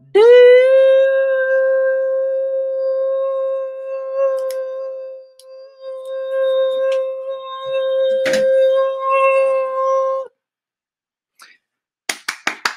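A man's voice holding one long high sung note, scooping up into it at the start, wavering briefly about halfway and cutting off about ten seconds in: the drawn-out final note of a sung tune on a single deep breath.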